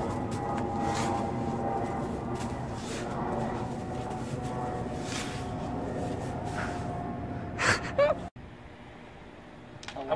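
Snow shovel scraping and digging into packed snow, several short scrapes over a steady background hum, the last two the loudest; the sound cuts off suddenly about eight seconds in, leaving quiet room tone.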